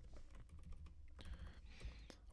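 Faint clicks of computer keyboard keys being pressed, a few scattered keystrokes as a command line is edited.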